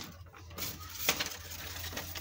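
Handling of a folded brown paper bag and a clear PVC sheet on a cutting mat: a few light taps and rustles, over a steady low hum.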